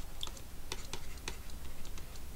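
Light, irregular ticks and clicks of a stylus tapping on a drawing tablet during handwriting, over a faint low hum.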